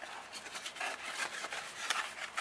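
Small cardboard boxes being handled: rubbing and rustling of paper against cardboard and wood, with a couple of sharp clicks.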